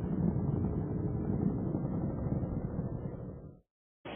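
Space shuttle launch rumble from the solid rocket boosters and three main engines during ascent: a steady low rumble that fades away and cuts off to silence shortly before the end.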